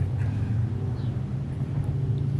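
A steady low mechanical hum or rumble, even throughout, with no distinct events.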